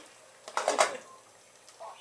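A plastic spoon stirring vegetables in an aluminium pressure cooker pot: a short cluster of scrapes about half a second in, otherwise quiet.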